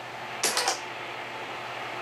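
Elmo 35-FT(A) sound filmstrip projector's cooling fan running steadily, with a short rattle of clicks from its film-advance mechanism about half a second in as the filmstrip is moved on to the next frame automatically.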